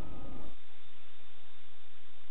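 Steady, even hiss with a faint low hum underneath and no distinct events: background noise of a dashcam recording.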